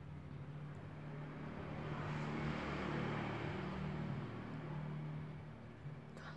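A road vehicle passing by, its noise swelling to a peak about three seconds in and then fading, over a steady low hum.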